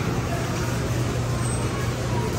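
Steady low hum of a large store's ventilation and heating, under the general noise of shoppers moving through the entrance with indistinct voices.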